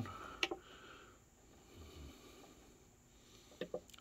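Faint handling clicks from a Line 6 Pod Go multi-effects unit's encoder knobs and buttons being turned and pressed: one click about half a second in and a few small ones near the end, over quiet room tone.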